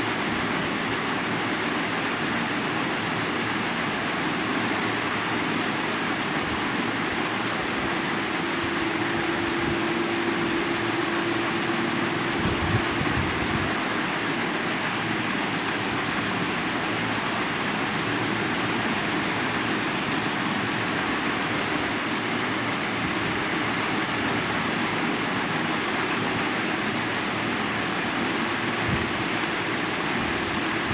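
Steady hissing room noise of the kind a running fan or air conditioner makes, even throughout, with a faint hum for a few seconds around a third of the way in and a brief low thump just after.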